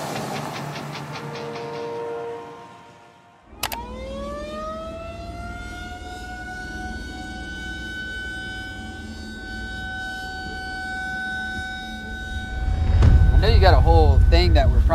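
Music fading out, then a click and a siren-like tone that winds up in pitch for about two seconds and holds steady, like a civil-defence air-raid siren. A man starts talking near the end.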